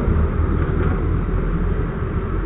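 Steady low rumble of wind buffeting the microphone over road noise from a moving vehicle, heard while riding in the open air.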